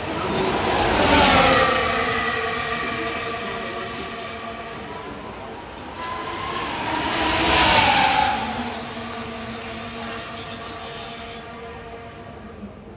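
Two Formula 1 cars' 1.6-litre V6 turbo-hybrid engines passing one after the other, about six and a half seconds apart. Each engine note rises to a peak as the car goes by and then falls away, dropping in pitch.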